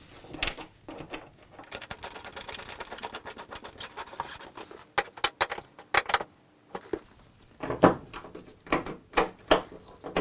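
A rusty nut being threaded onto a ride-on mower's ignition switch and tightened with a spanner against the plastic housing: a quick run of fine metal ticks, then a few sharper clicks and taps. More clicks near the end as the key is worked into the switch.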